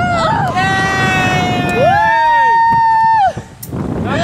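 A person screaming in fright on a canyon swing: two long held screams, the second pitched higher, breaking off suddenly a little after three seconds in, over wind rushing on the microphone.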